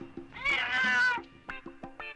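A cat meows once, a single drawn-out call about half a second in, over background music.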